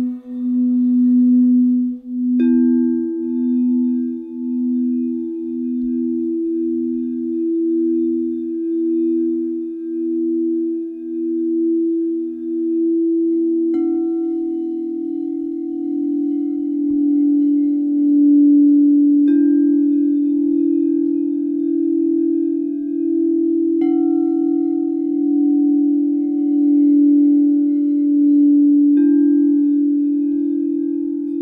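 Frosted quartz crystal singing bowls ringing in long, overlapping low tones that pulse slowly. A bowl is struck with a padded mallet about five times, each strike adding a fresh tone over the ones still sounding.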